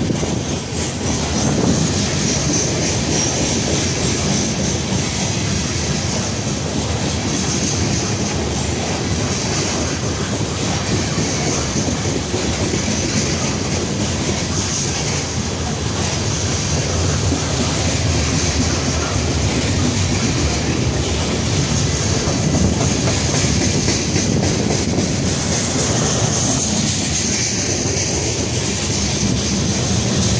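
Covered hopper cars of a BNSF freight train rolling past, a steady rumble with the clickety-clack of wheels over rail joints and a continuous high hiss from the wheels on the rails.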